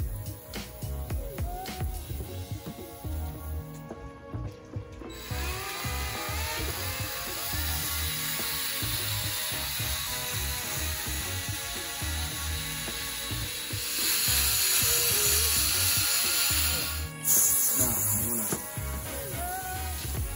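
A DeWalt cordless drill spinning a 3000-grit sanding pad, wet-sanding a plastic headlight lens, while water from a garden hose sprays over it. Background music with a steady beat plays underneath. The hiss of the drill and water starts a few seconds in and is loudest for a few seconds near the end.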